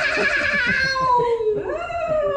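A woman imitating a reindeer with her voice: one long drawn-out call sliding slowly down in pitch, then a second call starting near the end.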